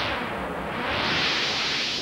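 Synthesized whooshing sound effect for a character shrinking into the bloodstream: a steady rush of noise whose top end sweeps down and back up about half a second in.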